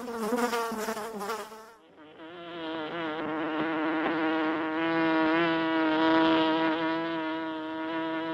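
Honey bees buzzing. About two seconds in, the buzz breaks off and dips, and a steadier, higher-pitched hum swells in and holds, wavering slightly.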